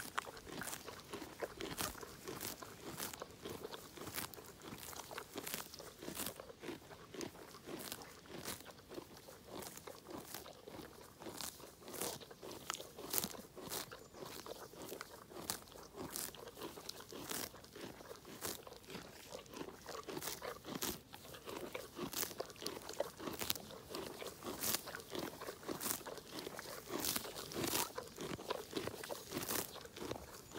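A pony tearing grass and chewing it close up: a quick, irregular series of sharp, crisp rips and crunches, a few each second, as it crops the lawn.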